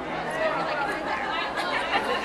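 Overlapping chatter of several voices talking at once, with no one voice standing out clearly.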